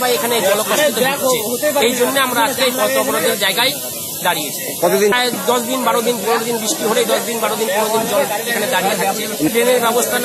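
Speech: a person talking continuously over a steady hiss.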